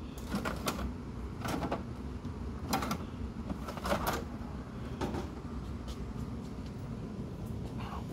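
A plastic CED videodisc caddy being slid into the front slot of an RCA SelectaVision videodisc player: a string of separate clunks and sliding knocks over the first five seconds, then quieter.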